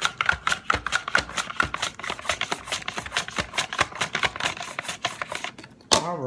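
A potato is sliced on a Tupperware mandoline with the straight blade fitted. The holder is pushed rapidly back and forth over the blade, and each stroke makes a crisp slicing scrape, several a second. The strokes stop near the end, and a single sharp knock follows.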